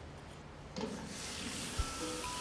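Soapy hands rubbing at a stainless-steel sink, then water from a push-button tap running into the steel trough, coming on suddenly just under a second in as a steady hiss.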